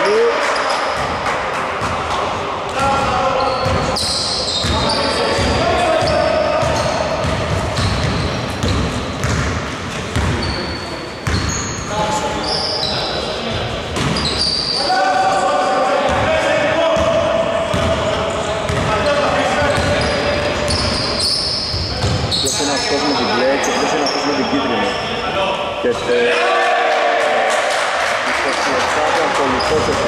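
Basketball bouncing repeatedly on a hardwood gym floor, with players' voices calling out, echoing in a large sports hall.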